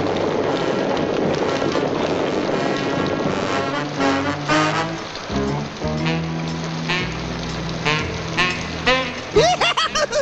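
Cartoon orchestral score. For about the first four seconds it plays over a dense rushing noise as animals stampede in the rain; after that the music carries on alone, with clear sustained low notes.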